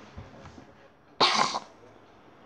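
A boy coughing once, sharply, a little over a second in, having choked on a mouthful of honey toast.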